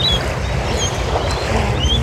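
Wind rumbling on the microphone over a steady outdoor rush, with a few short high chirps.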